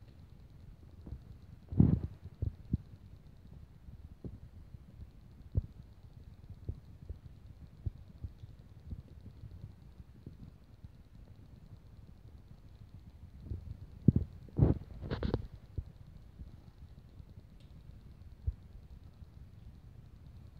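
Scattered soft knocks and clicks of Lego pieces being handled on a rug, over low rumbling handling noise. There is a louder cluster of knocks about two seconds in and another around fourteen to fifteen seconds in.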